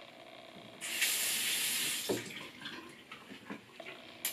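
Bathroom sink tap running for about a second and then shut off, followed by a few light clicks and knocks.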